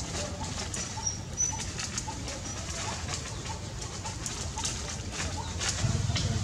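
Bird calling in the background, a short low note repeated about two to three times a second, with a few thin high chirps in the first second and a half.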